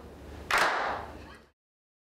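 A single hand clap about half a second in, ringing briefly in the room as it dies away.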